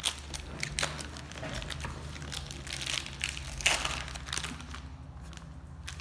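Plastic shisha tobacco pouch crinkling and crackling as it is squeezed and handled, dense crackles for about five seconds, then thinning out near the end.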